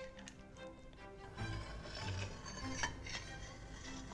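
Quiet background music, with a few faint clinks of a metal spoon against an enamel bowl as an egg yolk is scooped out.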